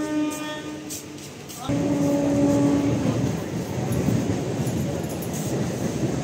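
A horn blows two long blasts, the second about 1.7 seconds in, and with the second a loud, steady rumble of heavy traffic sets in and continues.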